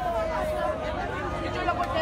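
Crowd chatter: many people talking at once close around, no single voice standing out.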